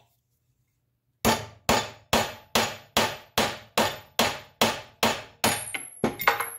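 A steel hammer strikes the spine of a carbon-steel knife blade about eleven times in a steady rhythm, roughly two and a half blows a second, each with a short metallic ring. The blade's edge is being driven down onto a brass rod on a steel block as an edge impact and toughness test. The blows start about a second in, after a short silence.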